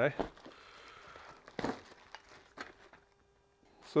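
Plastic bag packaging crinkling and rustling as it is handled, with one sharper crackle about one and a half seconds in, then a few small clicks.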